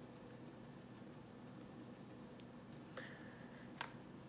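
Near silence: room tone with a faint steady hum, and a few light clicks in the last second or so.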